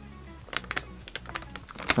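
A sheet of tracing paper handled and shifted in the hands, giving a run of short crinkling clicks from about half a second in.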